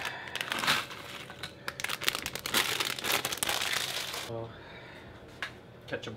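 Crisp packet crinkling as ready salted crisps are shaken out of it onto a plate, for about four seconds before it stops.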